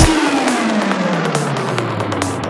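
Psytrance music in a DJ mix: the kick drum and bass drop out as a rising sweep peaks, leaving a synth tone sliding steadily down in pitch over a light high-hat tick.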